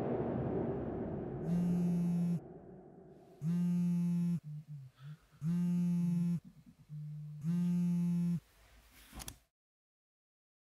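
The song's last sound dies away, then a low buzzing tone sounds four times, each about a second long and about two seconds apart, with fainter buzzes in between. It cuts off with a short crackle just before the end.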